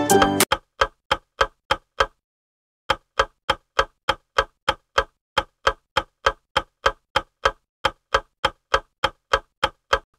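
Clock-tick sound effect of a quiz countdown timer, about three ticks a second, with a brief pause about two seconds in. Background music cuts off just as the ticking begins.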